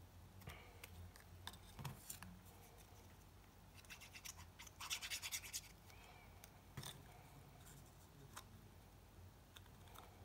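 Quiet handling of paper and card: light taps and clicks as small card pieces are picked up and pressed on. About four seconds in, a glue stick is rubbed across the back of a small card square in a short scratchy rasp.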